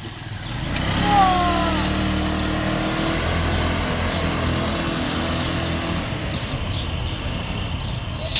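Small motor scooter's engine running steadily as the scooter pulls away, fading about six seconds in as it moves off.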